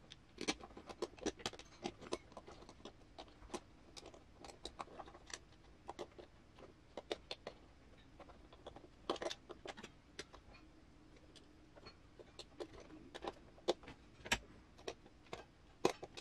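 Irregular small clicks and clinks of loose metal screws and wheel parts being handled while assembling an RC crawler's beadlock wheel and tire, with sharper taps about nine seconds in and again near the end.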